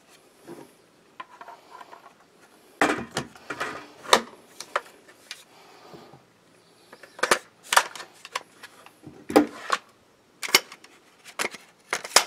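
Parts of an FN PS90 clicking and clacking as it is reassembled: the trigger pack and barrel assembly are fitted back into the polymer frame, with parts knocking on the wooden table. The sharp clicks come at irregular intervals, with quieter stretches between.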